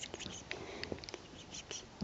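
A kitten's paws scrabbling and scuffing on a fleece blanket: an irregular run of small rustles and light clicks.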